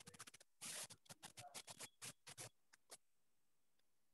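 Faint scratching strokes of a pen or stylus moving quickly across a writing surface, about a dozen short strokes over the first three seconds.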